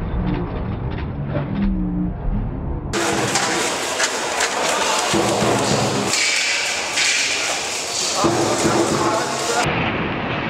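Lion-dance drum and cymbals beating amid a crowd for about three seconds. Then an abrupt cut to a crowded hall full of chatter, with scattered clicks and thumps.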